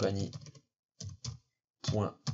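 Computer keyboard typing: a few short keystrokes about a second in, between stretches of speech.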